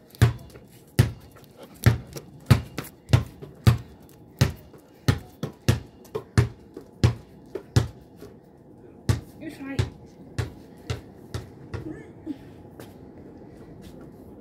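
A basketball dribbled on patio paving slabs, bouncing steadily about one and a half times a second for the first eight seconds, then a few more spaced bounces that stop about twelve seconds in.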